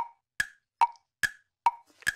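A ticking sound effect of short, evenly spaced pitched knocks, five of them a little under half a second apart. It is a waiting-for-the-answer cue after a quiz question.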